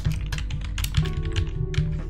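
Typing on a computer keyboard: a quick, irregular run of key clicks that stops at the end, over steady background music.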